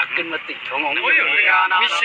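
Speech: a person talking, the voice rising and falling in pitch.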